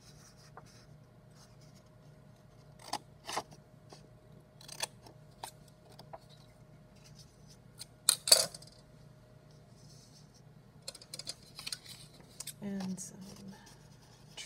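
Paper cut-outs and scissors being handled on a table: scattered light taps and rustles, the loudest about eight seconds in, then a quick run of scissor snips through construction paper near the end.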